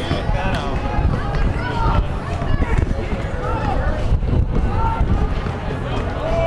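Indistinct voices of players and onlookers calling out on an outdoor basketball court, over a steady low rumble.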